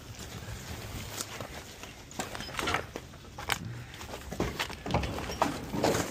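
Irregular footsteps and rustling of dry cardboard and brush as junk is gathered and carried, with scattered knocks.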